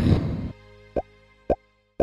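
Animated end-screen sound effects: a short low whoosh at the start, then three quick rising cartoon pops about half a second apart, over faint background music.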